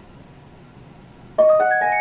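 A short electronic chime from the Singing Machine SML625BTBK karaoke speaker, a run of clean notes stepping upward, starting suddenly about a second and a half in: the tone that signals a successful Bluetooth pairing. Before it, only faint room tone.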